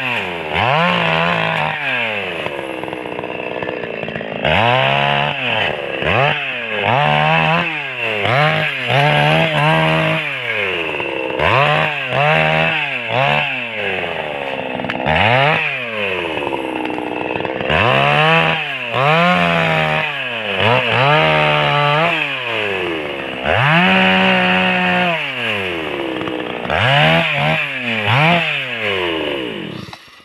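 Two-stroke chainsaw revving up and dropping back again and again as it cuts through pine branches, with a few longer full-throttle cuts between the short bursts.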